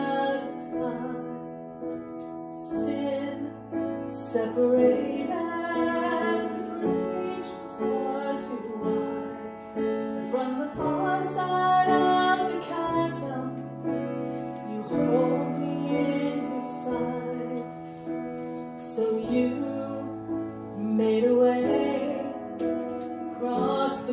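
A woman singing a slow gospel song with piano accompaniment.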